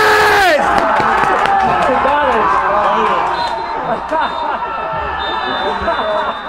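Several voices shouting and cheering as a goal is scored in a football match. One long held yell breaks off about half a second in, and excited yells from several people follow.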